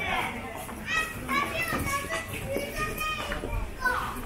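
Children's high voices calling out and chattering.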